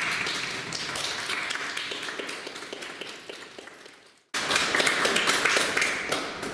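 A small audience applauding, hand claps dense at first and thinning out. The clapping cuts off suddenly about four seconds in, then starts again at full strength a moment later.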